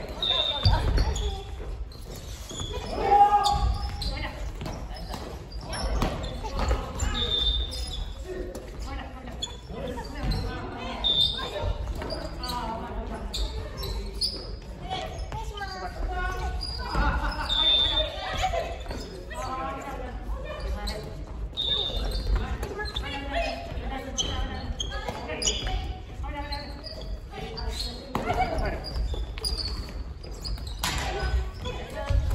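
Family badminton doubles rally in a gym hall: repeated sharp racket strikes on the shuttle and footfalls on the wooden court floor, with players' voices and calls throughout.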